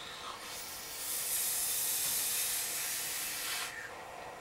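A long draw on the Immortalizer rebuildable dripping atomizer, its single coil wicked with cotton: a steady hiss of air and vapour pulled through the firing coil, lasting about three seconds and stopping just before the end.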